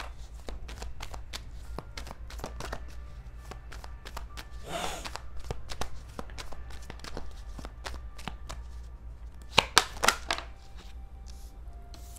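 A deck of tarot cards being shuffled by hand, a quick run of soft card-on-card flicks and slaps. There are a few louder knocks about ten seconds in.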